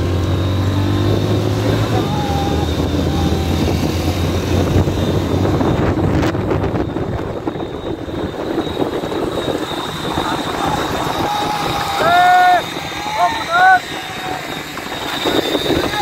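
Motorcycle engines running and wind noise as the bikes ride along a road, with men shouting a few short calls about three-quarters of the way through.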